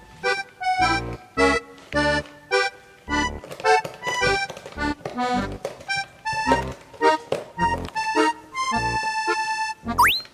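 Background accordion music: a bouncy melody over a steady bass beat about twice a second, closing on a held chord near the end.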